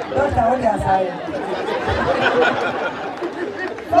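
Several people talking over one another: chatter at speaking level, with no other clear sound.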